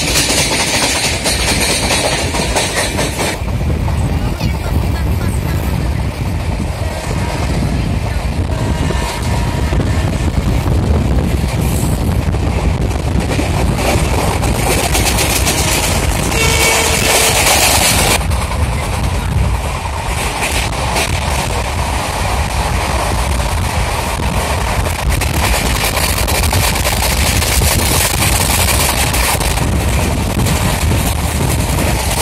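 Train running at speed, heard from inside a carriage: a steady rumble and rattle of wheels on the rails, with a louder, brighter stretch lasting about two seconds past the middle.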